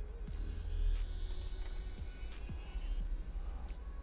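Quiet background music with a steady low hum beneath it.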